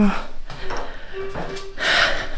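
A woman's voice trailing off at the start, then faint vocal sounds, with a short rushing noise near the end.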